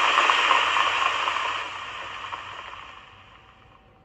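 Hissing, rustling noise from the television programme's soundtrack, recorded off the screen. It holds steady, then fades away over the last two seconds.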